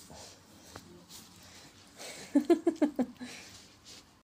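A person laughing in a quick run of about five short bursts, starting about two and a half seconds in, after faint rustling of a hand being pawed and bitten by a cat.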